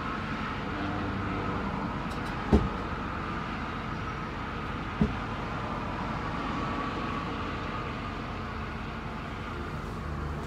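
Steady vehicle and traffic noise, with two short dull thumps about two and a half and five seconds in.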